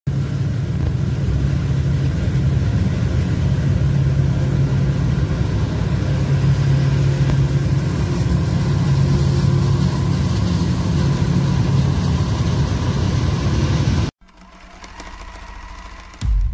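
Forage harvester chopping maize for silage, its diesel engine and cutting gear running steadily at work alongside tractor engines. The sound cuts off abruptly about fourteen seconds in, leaving a much quieter engine hum.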